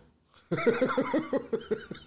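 A man laughing in a quick run of ha-ha pulses, about seven a second, starting about half a second in and fading near the end.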